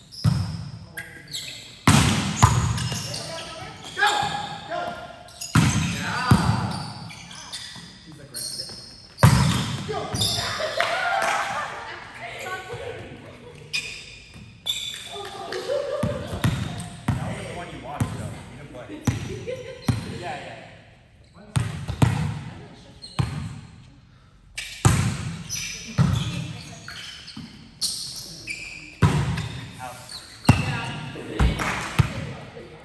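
Volleyball rally: repeated sharp slaps of the ball off players' forearms and hands, one every second or few, each ringing on in a reverberant gymnasium.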